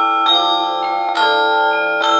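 Intro music of ringing, bell-like mallet notes, with a new chord struck every half second to a second over sustained tones.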